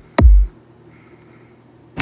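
An electronic beat plays one last kick drum hit, then stops dead as the DAW's playback is halted. Only a faint hum remains after it.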